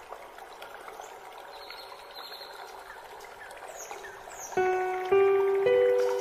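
Water trickling like a small stream, with a few bird chirps above it; about four and a half seconds in, relaxation music comes in with three ringing notes, each starting sharply and sustaining, louder than the water.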